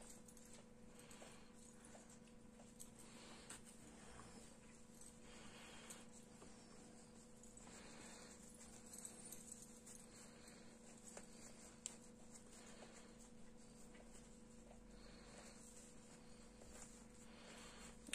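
Near silence: faint soft rustling of fibre stuffing being pushed by hand into a small crocheted head, over a steady low hum, with one small click about two-thirds of the way through.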